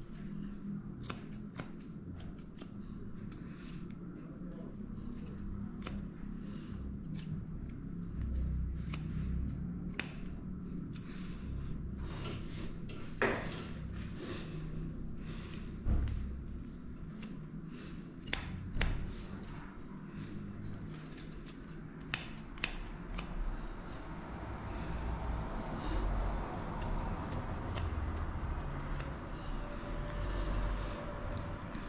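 Grooming scissors snipping the hair around a dog's face in quick, irregular clips, with a few louder snips in the middle.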